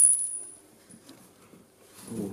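A single high metallic ring from a small metal object that has just been struck or dropped, dying away within about half a second.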